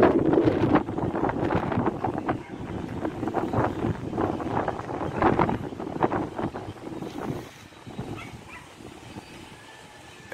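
Wind buffeting the microphone in gusts, loudest at the start and dying down after about seven seconds.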